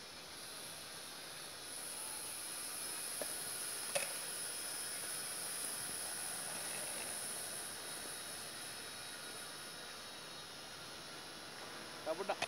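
High-pitched whine of a JJRC H8C quadcopter's small electric motors and propellers, working hard to lift a 70 g action camera. The whine grows louder for a few seconds and then fades, with one short click about four seconds in.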